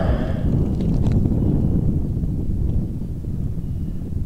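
Wind buffeting the microphone: an irregular low rumble.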